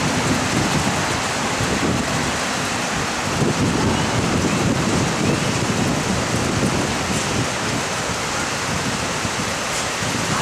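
Steady, loud rushing noise like heavy rain, even throughout, with no clear single source.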